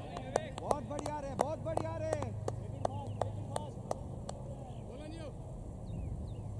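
Cricket players' voices calling out across an open field, with a run of sharp claps, about three to four a second, through the first four seconds or so, over a low steady hum.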